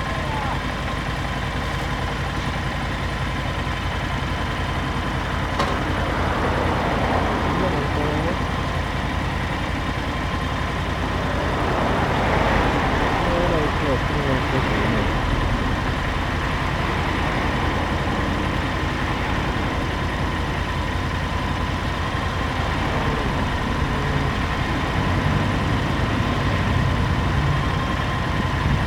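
Honda VT1300CX and Yamaha DragStar V-twin cruiser motorcycles idling together, a steady low rumble with no revving.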